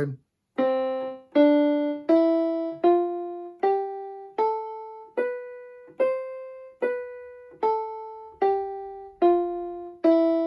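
MK-2000 electronic keyboard on a piano voice, playing the C major scale one note at a time, about one note every three-quarters of a second. It rises an octave from middle C to the C above and steps back down, each note fading before the next is struck.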